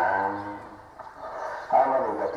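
A voice holds a long, drawn-out note that fades away over the first second. After a short pause the voice picks up again near the end.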